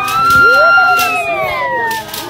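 Group of Zulu women singing, with one very high held note above the other voices that slides down in pitch near the end. Sharp beats, like claps, fall about once a second.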